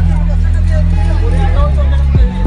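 A song with a sung vocal over a heavy, sustained bass line; the bass note changes about three-quarters of the way through.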